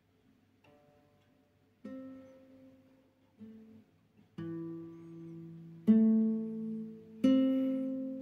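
Nylon-string classical guitar played fingerstyle: single plucked notes of a slow arpeggio, each left to ring. About six notes, starting faint and growing louder through the passage.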